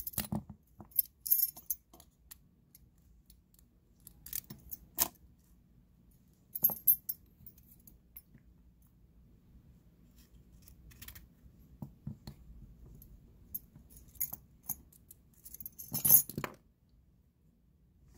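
Small brass and steel lock parts clicking and clinking as a padlock cylinder is taken apart by hand. The clinks come in scattered clusters, and the loudest cluster falls near the end.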